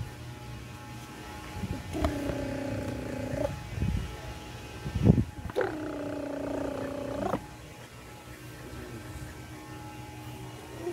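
A dog making two drawn-out vocal calls, each about a second and a half long and held at a steady pitch. A couple of soft knocks fall between them, from the rough play in the bedding.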